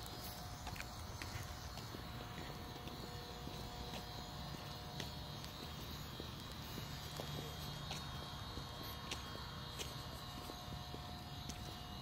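Faint footsteps on pavement over a low, steady background hum with a few faint high steady tones.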